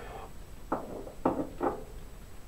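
Three short, light knocks, the hand handling glass jars on a shelf, about a second in.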